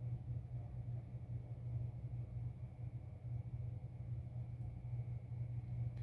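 Quiet room tone: a steady low hum with faint background hiss and no distinct events.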